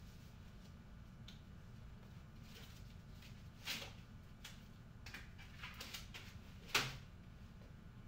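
Refrigerator door being handled: a sharp click just before the middle, a few softer clicks and rattles, then a louder knock near the end, over a low steady hum.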